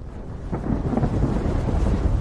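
Sound-design rumble for an intro animation: a deep, thunder-like rumble that fades in from silence and grows steadily louder.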